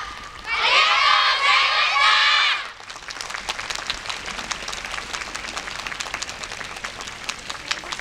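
A group of children shouting together in high voices for the first couple of seconds, then audience applause: many hands clapping steadily.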